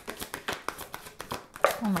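Tarot cards being shuffled by hand: a quick run of card clicks and riffling, during which one card flies out of the deck, a 'flipper' or jumper card.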